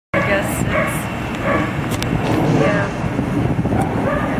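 A dog barking several times in short bursts, over a steady low background rumble.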